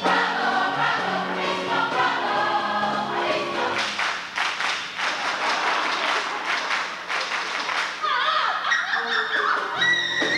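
Stage musical's cast chorus singing with the pit orchestra, with hand clapping joining in from about four seconds in. Near the end a single voice sings out with sliding pitch.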